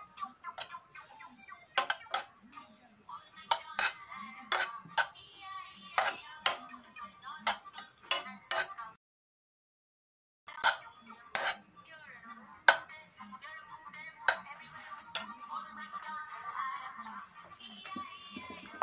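A metal spoon or fork clinking and scraping against a nonstick frying pan while kimchi is stir-fried: irregular sharp clicks, under faint background music. The sound drops out completely for about a second and a half midway.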